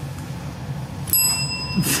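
Chrome desk service bell struck once about a second in, giving a clear ring that fades away.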